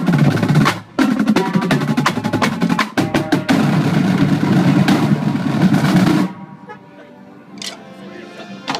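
Marching drumline of snare drums, tenor drums and Mapex bass drums playing a loud, dense passage with rolls. The line breaks off briefly about a second in, then stops together suddenly about six seconds in.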